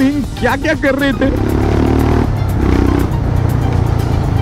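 Motorcycle engine running at low riding speed, a steady low rumble mixed with wind noise, under background music, with a brief voice about the first second in.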